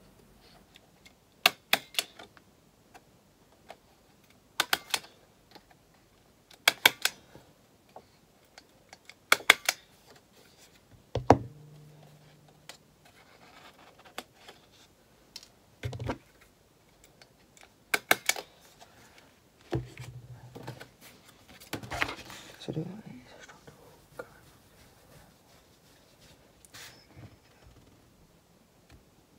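A stapler clacking shut on paper again and again, a dozen or so sharp clicks that often come in close pairs, a couple of seconds apart, with light paper handling between.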